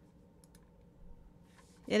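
A few faint computer clicks, like a mouse or keyboard, over quiet room tone. A woman's voice starts speaking right at the end.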